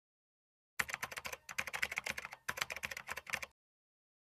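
Typing sound effect: a rapid run of keystroke clicks lasting about three seconds, with two brief pauses, starting about a second in and set against dead silence.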